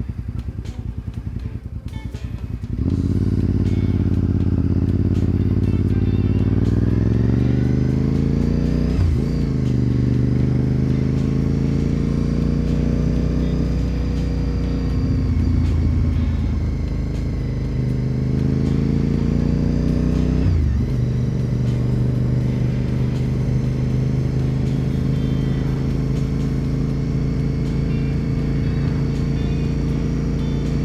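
Honda RC51 (RVT1000R SP2) 1000 cc V-twin engine pulling away from low speed and accelerating up through the gears, its pitch rising and then dropping at shifts about nine, sixteen and twenty-one seconds in, then running steadily at cruising speed. The first three seconds are quieter, at low speed.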